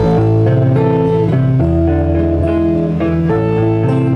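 Guitar picking the opening notes of a song, one note after another, starting abruptly and then playing on steadily.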